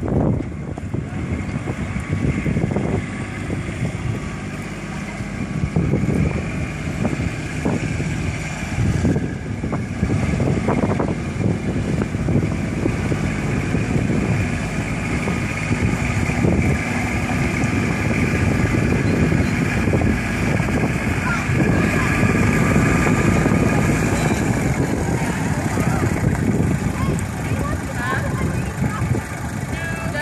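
Kubota compact diesel tractor running steadily as it drives up with its front loader raised, getting a little louder in the middle of the stretch.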